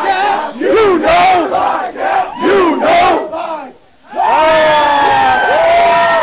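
A group of men shouting a drinking-song chant in short bursts, breaking off briefly near the four-second mark, then joining in a long drawn-out group shout.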